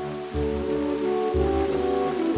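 Background music: held chords over a low pulse that comes about once a second.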